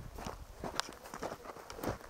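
Footsteps on dry, gravelly dirt: a few separate steps.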